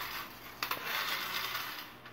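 Japanese-made friction toy car's flywheel motor whirring as the car is pushed along a carpet, starting with a click about half a second in and fading out near the end.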